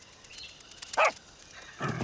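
A cartoon robot pet dog gives a single short bark-like yip about a second in, over a faint jungle background.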